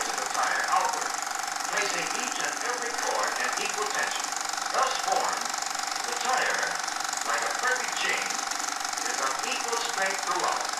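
An indistinct voice on an old film soundtrack, over a steady hum and a fast, even mechanical clatter.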